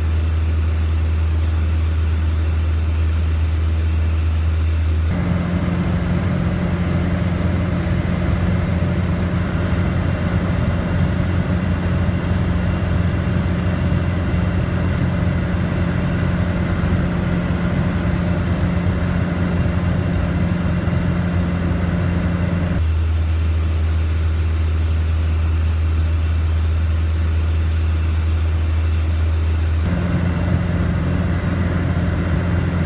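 Steady drone of a light single-engine airplane's piston engine and propeller, heard from inside the cabin in cruise flight. Its tone shifts abruptly about five seconds in and shifts back near the end.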